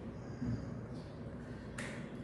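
Low background room noise with one sharp click near the end, as the signer's hands strike together.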